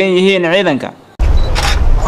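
A man's voice finishes a phrase and trails off. Just over a second in, the sound cuts abruptly to a loud low rumble of wind buffeting the microphone, with hiss above it.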